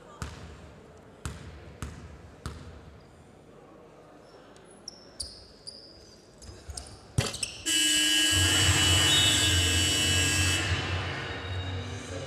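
A basketball bounced on the hardwood court four times as the free-throw shooter dribbles before her shot, then a sharp knock of the ball at the rim. Once the free throw drops, a sudden loud burst of arena sound, PA music and cheering, runs for about three seconds and then fades.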